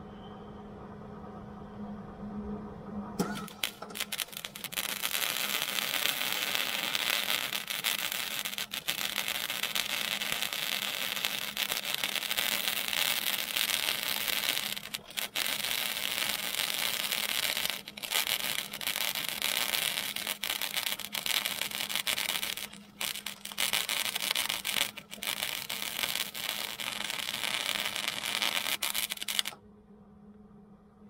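MIG welder with .030 solid wire and shielding gas laying a weld bead. The arc's steady crackling hiss starts about three seconds in and runs, with a few brief breaks, until just before the end, over a steady low hum.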